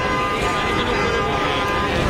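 Busy city street traffic noise, with a steady pitched tone held for about two seconds that stops just before the end.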